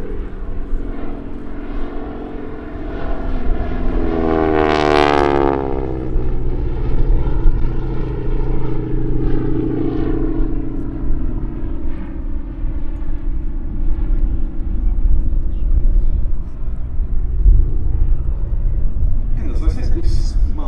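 North American Harvard IV's Pratt & Whitney R-1340 Wasp radial engine and propeller running hard in a display pass overhead. It swells loudest about four to six seconds in with a sweeping, phasing tone as the aircraft goes by, then runs on steadily with its pitch slowly falling.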